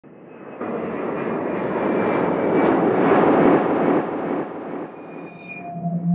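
Airplane engine noise passing by, swelling to a peak about three seconds in and then fading, with a few brief thin tones near the end.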